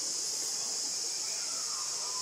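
Steady, high-pitched drone of an insect chorus, with a faint falling whistle near the end.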